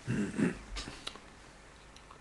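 A man coughing to clear his throat, two short coughs close together in the first half second, because something has caught in his throat.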